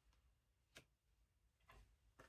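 Near silence broken by a faint tap of a tarot card laid down on the spread, just under a second in, with a fainter click near the end.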